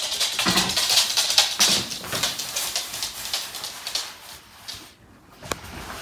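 Pembroke Welsh corgis playing: a rapid run of scuffling noises and short dog sounds that dies away after about four and a half seconds, then a single sharp click.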